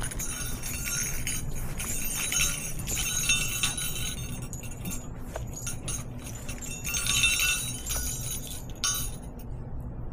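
Insecticide sprayer hissing in several bursts, with a faint whistle in the spray, as a yellow jacket nest is treated. The bursts are longest in the first half and cut off suddenly, with a shorter burst about seven seconds in, over a low steady hum.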